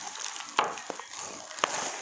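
Plastic bubble wrap rustling and crinkling as a bottle is pulled out of it, with a couple of sharp crackles.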